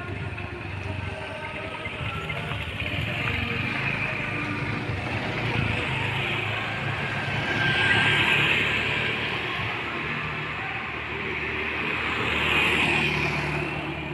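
Road vehicles passing, the sound swelling and fading twice: about eight seconds in and again near the end.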